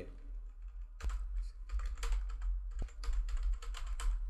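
Typing on a computer keyboard: a run of quick, irregular key clicks starting about a second in, entering an email address.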